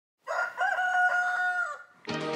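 A rooster crowing once: a short opening note, then a long held note that drops off at the end.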